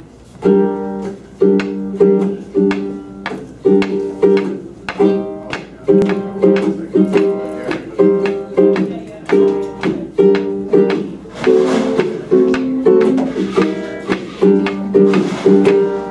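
Small resonator ukulele strummed in a steady, bouncy rhythm, about two chord strums a second, as the instrumental intro to a song.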